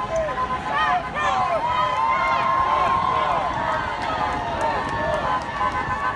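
Crowd of marchers calling out and shouting, many voices overlapping, with one long steady high tone held over them in the middle.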